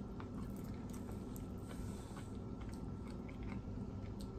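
Close-miked chewing of food: faint, scattered wet mouth clicks and small crunches over a steady low hum.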